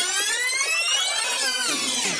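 Synthesized intro sound effect for an animated logo: a dense sweep of many tones gliding upward together, turning to fall near the end.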